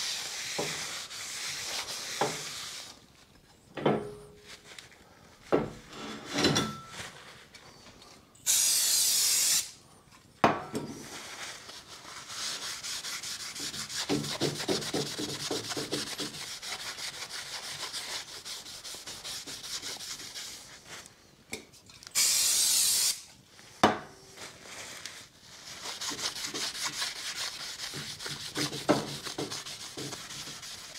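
A cloth rubs and wipes over the faces of a new brake disc to clean off its oily lacquer coating, with a few knocks as the disc is handled. Two short, loud hisses of aerosol brake and clutch cleaner spray onto it, about a third of the way in and again about three-quarters through.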